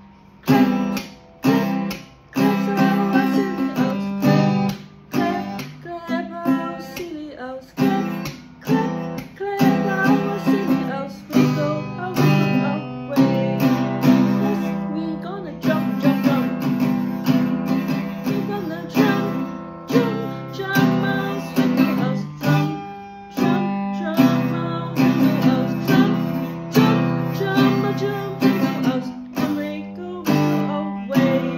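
Acoustic guitar strummed in a steady rhythm, playing chords to accompany a children's song.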